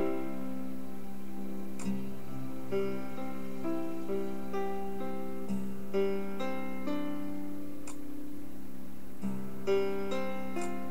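Instrumental break of a slow ballad's backing track, with no singing: soft chords and single notes changing about once a second at an even level.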